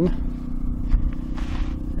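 Portable generator engine running steadily under load, supplying about 500 watts: a continuous low hum with rumble. A brief hiss about one and a half seconds in.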